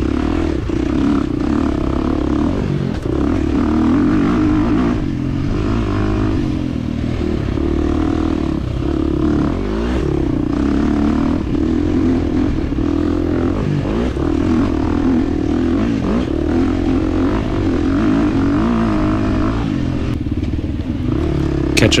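2023 KTM 350 XC-F dirt bike's single-cylinder four-stroke engine running hard, its pitch rising and falling over and over as the rider works the throttle.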